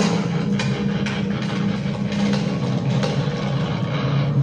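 Soundtrack of an animated video playing from a TV: a steady low drone with a faint beat about twice a second.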